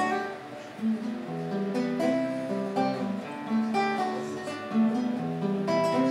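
Classical guitar played solo: an instrumental passage of picked notes and chords in a steady, flowing pattern, with no singing.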